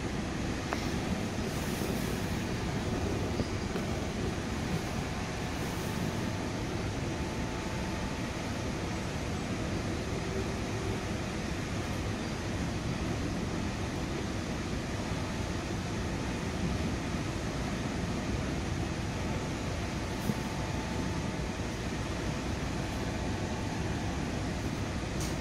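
Commuter train running along the track, heard from inside a passenger coach: a steady rumble of wheels on rail.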